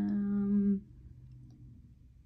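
A woman's drawn-out hesitant "ummm", a steady hum held on one pitch for about a second, then only faint room sound.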